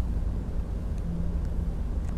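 Steady low background rumble with a faint hum.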